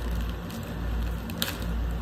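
A clear plastic bag being handled and pulled open, crinkling, with one sharp crackle about one and a half seconds in, over a steady low hum.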